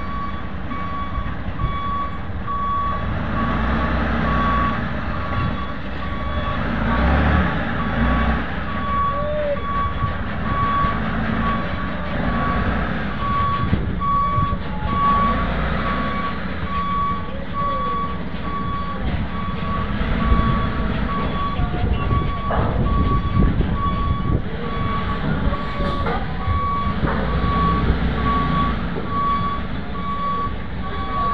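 A box truck's reversing alarm beeps at a steady pace over the low running of its diesel engine as the truck backs toward a ferry's loading ramp. A few knocks come in the later seconds.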